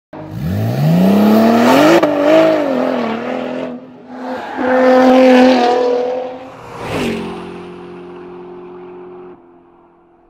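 Sports-car engine sound effect revving up, climbing in pitch, then revving a second time. A sharp hit follows, then a steady hum that fades away near the end.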